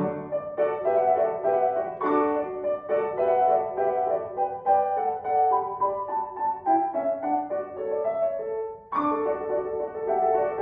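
A grand piano played: a classical sonata passage played by ear, a run of melody notes over accompaniment, with a brief break in the sound about nine seconds in.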